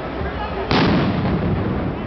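A riot-police grenade going off with a single loud bang about two-thirds of a second in, its echo dying away over about a second.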